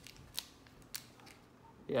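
Foil booster-pack wrapper being handled and pulled open, giving a few short, sharp crinkles with faint rustling in between.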